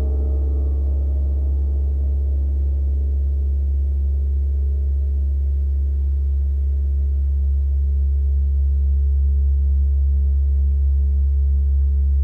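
Background music: a long sustained low drone with ringing, gong-like higher tones that fade over the first few seconds.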